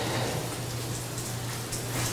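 Steady hiss with a low, even hum underneath: the room tone and background noise of the recording.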